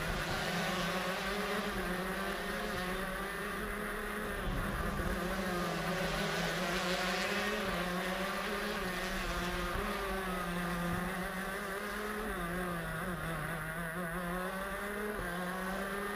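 Racing shifter kart's Honda CR125 two-stroke engine heard on board at speed, its pitch rising and falling repeatedly as the kart brakes, corners and accelerates.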